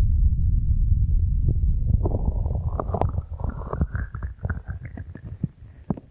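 Breath blown onto a binaural microphone's silicone ears, heard as a loud low wind rumble that fades away over the last few seconds. From about two seconds in come crackly clicks from the hands on the mic's ears and a faint rising hollow tone.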